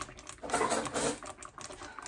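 Thick Alfredo cream sauce bubbling in a pot, with irregular little pops and clicks and a denser run of popping about halfway through.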